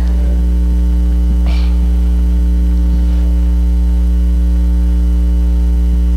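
Loud, steady electrical mains hum: a low drone with a stack of evenly spaced overtones, unchanging throughout, carried by the microphone and sound-system chain.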